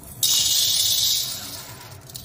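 Dry split lentils poured from a steel bowl into an iron kadai: a sudden dense rush of small grains hitting the metal pan, starting about a quarter second in and fading out over about a second and a half.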